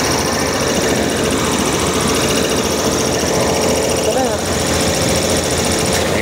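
Diesel locomotive engine idling close by: a loud, steady mechanical drone with a constant hum and a high whine, unchanging throughout.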